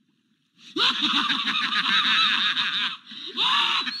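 A loud chorus of many overlapping honking, cackling calls, as of a flock of geese. It starts under a second in and breaks off briefly near the end before carrying on.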